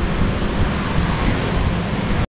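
Steady rushing background noise with a strong low rumble and no distinct events.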